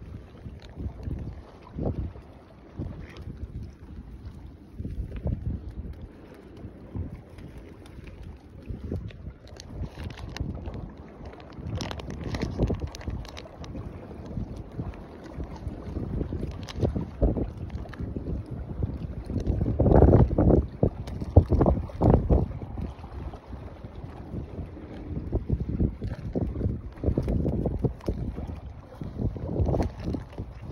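Wind buffeting the phone's microphone in uneven gusts, a low rumble that is loudest about two-thirds of the way through.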